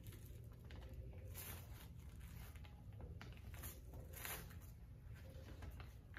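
Faint rustling and crackling of sticky transfer tape being slowly peeled off a stencil stuck to a wood board, a few soft rasps over a low steady room hum.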